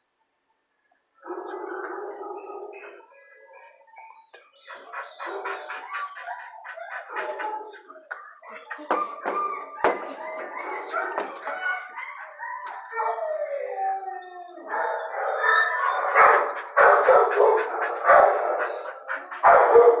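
Shelter dogs barking and howling in the kennels, many calls overlapping. It starts about a second in with one long howl and grows louder over the last few seconds.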